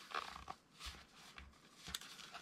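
Faint rustling and light handling knocks of a zipped fabric lock-pick case being folded shut and moved in the hands, with a sharper small click near the end.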